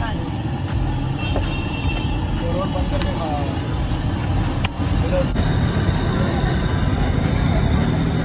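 Steady low rumble of street traffic, with voices in the background and a few sharp clicks near the middle.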